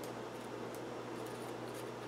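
Quiet room tone with a steady low hum and faint handling noise from fingers on a stainless steel film developing reel.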